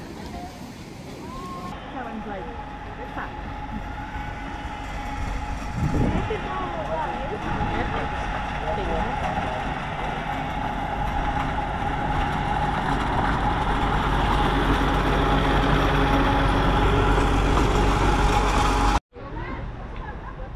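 Narrow-gauge train running into the station on the Ravenglass & Eskdale Railway. The running noise grows steadily louder as it comes alongside, with a steady high-pitched tone through it, then cuts off abruptly near the end.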